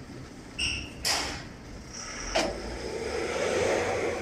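Thin sheet metal being handled and laid onto an electromagnetic sheet-metal brake. It gives a short ringing ping, a sharp clatter just after a second, then a click. After the click a steady hum rises, as from the brake's electromagnet being switched on to clamp.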